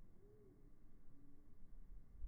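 A distant bird hooting softly at low pitch: one rising-and-falling note near the start, then a flat note a little after a second in.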